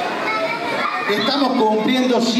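Mostly speech: a man's voice through a microphone and PA in a large hall, over chatter from the crowd.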